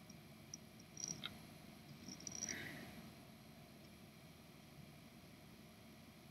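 Near silence, with a few faint short ticks about a second in and again around two and a half seconds in.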